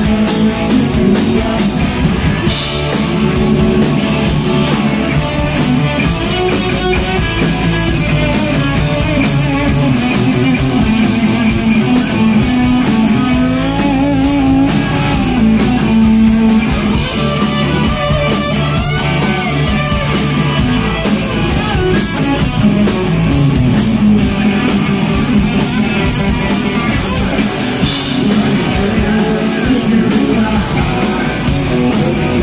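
Live rock band playing loud and steady: two electric guitars over a full drum kit.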